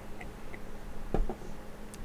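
Someone taking a sip of beer from a glass: faint mouth and glass sounds with a single sharp click about a second in, over a low steady hum.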